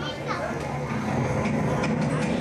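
Indistinct voices, with music playing underneath.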